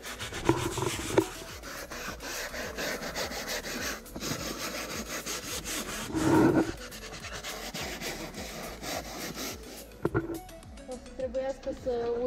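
Stiff-bristled hand brush scrubbing foamed textile cleaner into a car's fabric seat, in rapid back-and-forth strokes. A couple of sharp knocks come about a second in, and a louder brief bump around six seconds.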